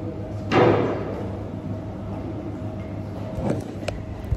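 A phone being handled close to its microphone: a brief loud rushing noise about half a second in, then sharp clicks and scrapes near the end as fingers cover the camera, over a steady low room hum.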